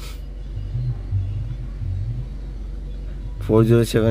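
A car engine idling, heard from inside the cabin as a low steady rumble. A man starts speaking near the end.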